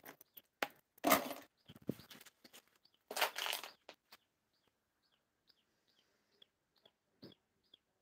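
A small bird chirping over and over, short high chirps about two to three a second, clearest in the second half. Two loud, short noisy bursts come in the first half.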